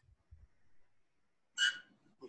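A pause in a man's speech: faint room tone, then about one and a half seconds in a brief hissy vocal sound just before he speaks again.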